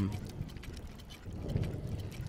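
Faint scattered clicks and soft rustles over a low steady hum, with the tail of a spoken "um" at the very start.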